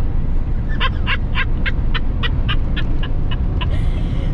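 Laughter in a quick run of about a dozen short 'ha' bursts, about four a second, over the steady low drone of a diesel camper van's engine and road noise in the cab.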